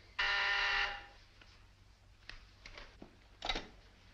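A desk telephone rings once, a single steady buzzing ring lasting under a second. Faint clicks and a short rattle follow as the handset is picked up.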